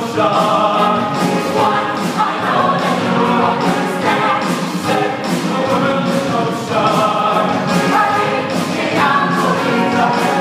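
A mixed show choir, men's and women's voices together, singing a number over an accompaniment with a steady beat.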